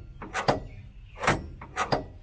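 A few sharp clicks and knocks from a Projekta suspended accelerator pedal as it is pressed through its travel and let back.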